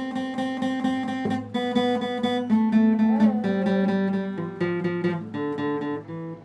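Acoustic guitar strummed and picked in a steady rhythm, the chord changing about every second.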